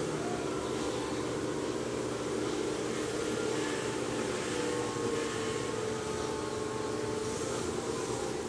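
Electric potter's wheel running with a steady motor hum and buzz as it spins a large stoneware pot.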